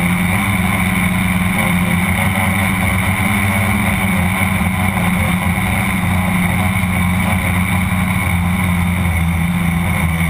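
Tricopter's electric motors and propellers buzzing steadily in flight, heard up close from the camera mounted on the craft.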